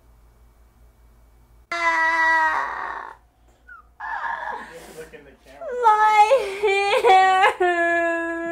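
A woman wailing and crying out in exaggerated distress: one held high cry about two seconds in, then breathy sobbing and a string of wavering, rising-and-falling wails over the last few seconds.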